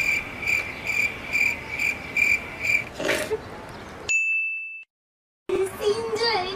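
A high electronic beep repeating about twice a second for roughly three seconds. It gives way to a brief noisy swish, then a single longer steady beep that cuts off into a moment of dead silence.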